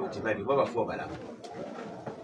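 A man's voice speaking, trailing off into quieter, lower sounds after about a second.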